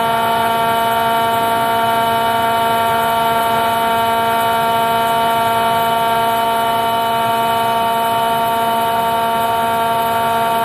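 Hardinge AHC turret lathe running at high spindle speed for a small drill, giving a steady, unchanging high-pitched machine whine.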